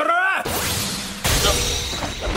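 Animated fight sound effects: a man's voice ends a line, then a rushing noise and a heavy crashing impact about a second and a quarter in, a blow landing on a boy.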